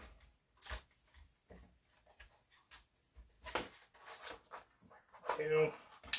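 Clear plastic blister pack of leather stitching chisels being handled: scattered light clicks and crinkles of the plastic and the metal chisels.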